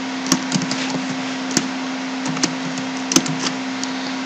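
Computer keyboard keystrokes: a slow, irregular scatter of about nine short clicks over a steady low hum and hiss.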